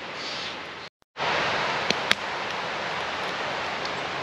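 Steady rushing of a rocky river. It drops out completely for a moment about a second in, then comes back louder. Two faint clicks follow soon after.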